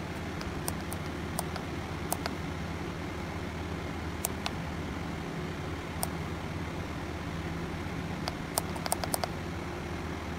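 Short, sharp clicks of a Bushnell trail camera's keypad buttons, pressed now and then while stepping through the clock setting, with several in quick succession near the end. Under them runs a steady low hum.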